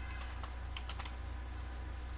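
Typing on a computer keyboard: a quick run of keystrokes, mostly in the first second, over a steady low hum.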